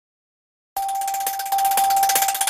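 Silence, then about three-quarters of a second in a news channel's logo jingle starts: a steady high held tone under a rhythmic, shimmering sparkle.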